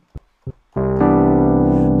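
Digital keyboard playing a piano sound: a held chord cuts off, a brief gap with a couple of faint clicks, then a new full chord is struck just under a second in and rings on, held to the end.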